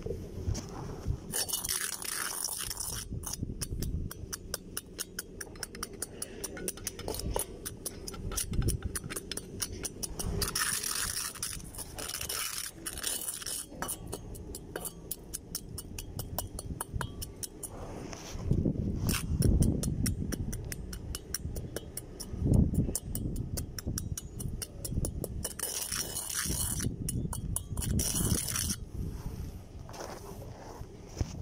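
A steel rod scraping and clinking against a steel bowl as a sand sample is stirred while it is dried with a gas torch for a moisture-content test. The clicks come several a second and are broken by a few short stretches of hiss and a few dull rumbles about two-thirds of the way through.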